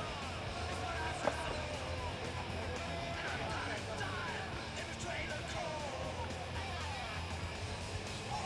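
Background music and crowd chatter in a large hall, with one sharp clack of a skateboard on the floor about a second in.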